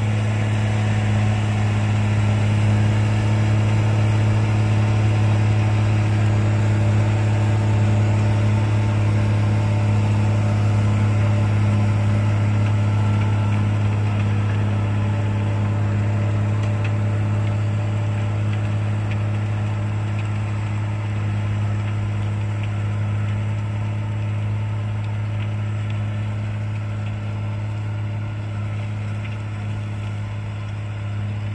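JCB Fastrac 3230 tractor engine running steadily as a low drone while pulling a rotary tiller through the soil. It fades a little over the last ten seconds as the tractor moves off.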